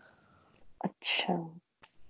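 Speech only: a quiet word or two spoken about a second in, with a hissing consonant, and otherwise quiet.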